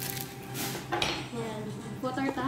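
Table knife and cutlery clinking against dishes on a table, a couple of brief clatters within the first second.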